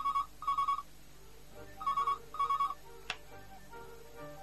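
Desk telephone ringing with an electronic double ring: two short beeping bursts, then the same pair again, followed about three seconds in by a single click as the handset is picked up.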